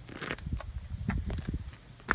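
Woven plastic grass-seed bag rustling as it is handled, in short irregular crinkles and scrapes.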